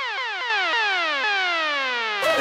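Electronic dance music with the beat cut out: a synth tone glides steadily downward in pitch, like a siren winding down, as a transition in the track.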